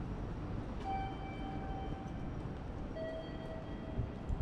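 Two-note electronic chime: a held higher tone lasting about a second and a half, then after a short gap a slightly lower tone for about a second. Both sound over the steady hum of a busy indoor station concourse.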